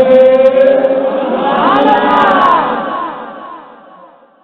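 Many men's voices chanting together, holding a long note and then rising in overlapping, wavering pitches, before dying away near the end.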